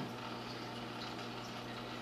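Steady low hum of running aquarium equipment, with a faint even hiss over it.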